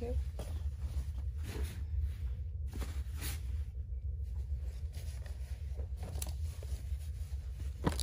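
Cloth rustling as clothes are handled, folded and laid on a pile, with a sharp click near the end, over a steady low hum.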